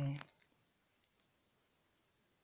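A single short, sharp click about a second in, against near silence.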